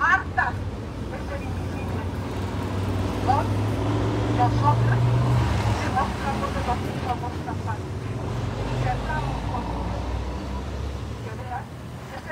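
A woman's voice through a handheld megaphone, indistinct, over the low rumble of a motor vehicle engine that is loudest about four to five seconds in.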